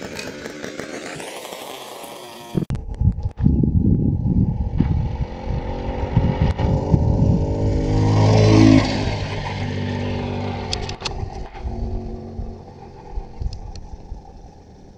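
Small engine on a homemade motorized bicycle passing by: it grows louder to a peak about eight and a half seconds in, then drops in pitch and fades as it moves away.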